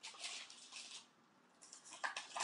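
Plastic bag of tapioca flour being handled and opened, rustling for about a second, then again briefly near the end.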